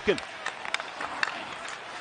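Ice hockey play heard through the rink microphones: steady rink noise of skates on ice, with a few sharp clicks of sticks striking the puck as it is passed.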